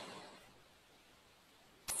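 Near silence: a pause in a conversation, with the last word fading out at the start and a short sharp click near the end as the talking starts again.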